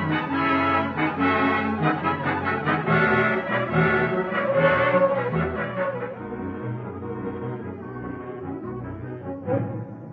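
Orchestral music bridge from an old-time radio drama, led by brass playing a dramatic passage that gets quieter over the last few seconds.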